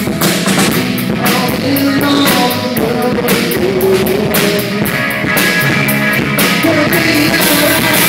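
Live rock band playing loudly: a drum kit beating a steady rhythm under sustained guitar notes.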